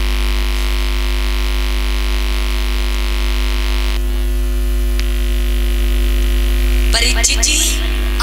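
Steady electrical mains hum from the stage sound system, with a hiss over it that drops away about four seconds in.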